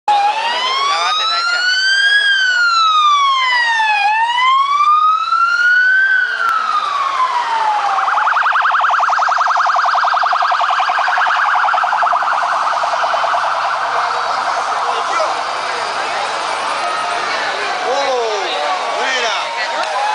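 Police motorcycle siren in a slow wail, rising and falling about every two seconds, that switches about eight seconds in to a fast yelp and then fades as the motorcycle passes. Crowd noise and voices fill the latter part.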